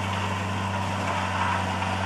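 Tracked Flory mulcher's 450-horsepower engine running steadily while its front hammer mill chops walnut prunings, a constant low hum. The engine is not labouring: the machine is hardly knowing that it's actually working.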